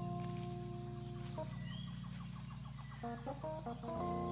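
Closing background music: sustained chords with a quick run of notes about halfway through.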